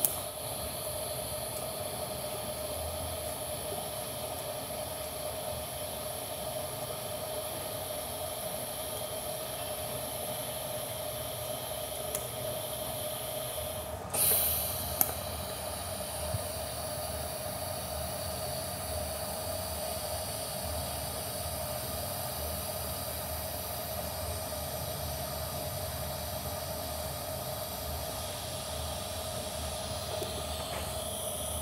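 TIG welding arc on a steel header collector, a steady hiss with a faint even hum under it. The hiss breaks off briefly about halfway through and comes back with a short louder burst.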